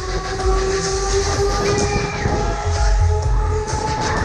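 Loud music from the Break Dance ride's sound system during the ride: a long held chord of several steady notes over a pulsing bass beat.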